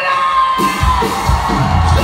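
Live rock band kicking into a song at full volume: a single held high note rings out, then drums and bass come in about half a second in.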